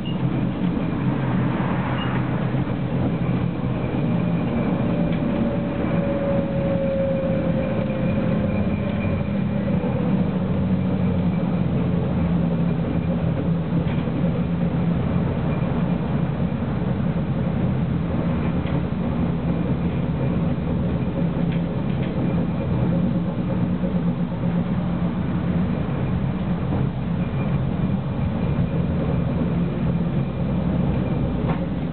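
Tram running along the track, heard from on board: a steady hum of the motors and running gear, with a faint whine that slides slightly down in pitch a few seconds in, and occasional light clicks.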